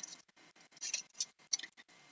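Packaging being handled: a few short, irregular crinkles and scrapes as a wrapped shower steamer is fiddled back into its wrapper.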